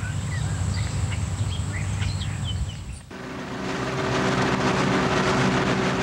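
Birds chirping over a low steady rumble. About halfway through, a sudden switch to a small outboard motor running steadily on an aluminium boat, with the hiss of its wake, growing louder over a second or so.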